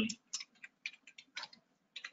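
Computer keyboard keys clicking faintly in a quick, irregular run of about eight keystrokes as a word is typed.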